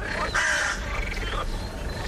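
Animal calls in a recorded night-time riverside sound-effect background, with a louder call about half a second in.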